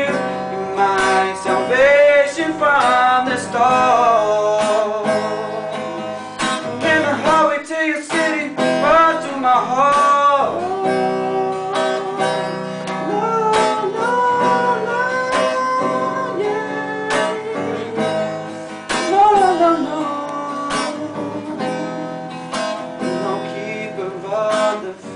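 Acoustic guitar strummed steadily, with a man singing over it in long, held, sliding notes.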